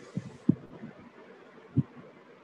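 A few short, dull low thuds at uneven intervals, the loudest about half a second in and another near the end, over a faint steady hiss.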